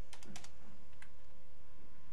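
Computer keyboard keys tapped several times, a few light clicks mostly in the first second, over a steady electrical hum.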